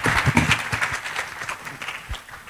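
Audience applauding: dense clapping that thins out and fades near the end.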